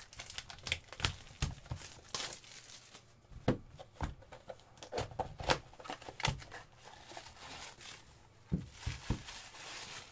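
Hands opening a small cardboard box and unwrapping the tissue paper around the hockey puck inside: irregular crinkling, tearing and rustling, with short knocks as the box is handled.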